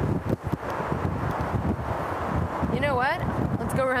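Wind buffeting the microphone, with a few light clicks as the handle of a locked car door is pulled. A short vocal sound comes about three seconds in.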